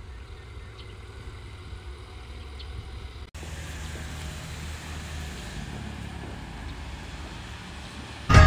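Low, steady rumble of a car and its tyres as a white SUV pulls away down a concrete lane, with an abrupt cut about three seconds in.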